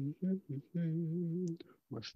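A man humming a few notes with his mouth closed: three short notes, then one longer held note that wavers slightly in pitch.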